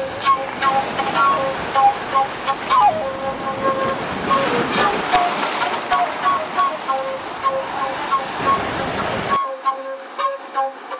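Ocean surf and wind noise, with a pitched tone recurring in short repeated pieces over it and one falling glide a few seconds in.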